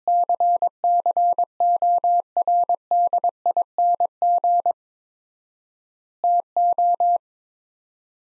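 Morse code sent as a steady tone near 700 Hz at 22 words per minute, keyed in dots and dashes that spell the words "according to". A long first word runs for about five seconds, followed by a gap of about a second and a half (extra word spacing) and a short second word.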